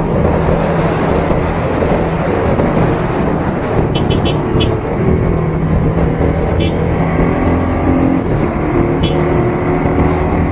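Modified Bajaj Pulsar 150 scrambler's single-cylinder engine running steadily under way, buried in heavy wind and road noise on a helmet chin-mounted action camera's built-in microphone. The engine note shifts in pitch over the last few seconds, and a few short clicks cut through.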